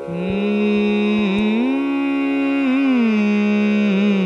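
A young man's voice opening a Carnatic raga alapana in Kalyani over the steady drone of an electronic shruti box. He holds one note, slides up to a higher held note about a second and a half in, and glides back down near the end.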